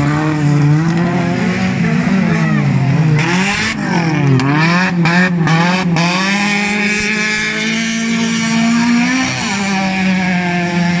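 Engines of several hobby-class autocross cars revving on a dirt track, their pitch climbing and dropping with throttle and gear changes, with two or more engines heard at once in the middle. A few short sharp cracks come about five to six seconds in.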